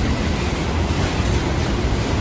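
Steady low rumble and hiss with no distinct events.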